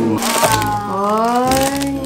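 A short crack right at the start, then a voice holding three drawn-out, sliding sing-song 'ooh' tones in a row.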